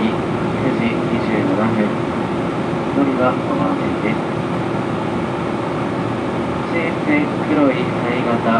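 Steady running noise heard from inside a 485 series electric train's passenger car in motion, a constant rumble with a faint steady hum, with brief snatches of a voice over it.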